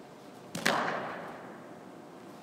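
A single sharp smack of a softball impact about half a second in, echoing and fading over about a second in a large indoor hall.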